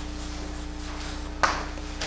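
Chalk writing on a blackboard: faint scratching strokes, then a sharp tap of the chalk against the board about one and a half seconds in, over a steady low hum.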